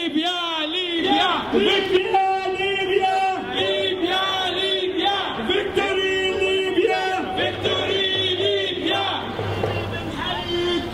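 Crowd of protesters chanting slogans in unison, a rhythmic, repeated chant.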